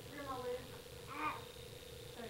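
Two short, faint, high-pitched cries whose pitch wavers and falls, the first near the start and the second about a second in.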